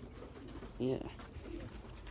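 A bird calling faintly, with low-pitched notes, and one short spoken "yeah" about a second in.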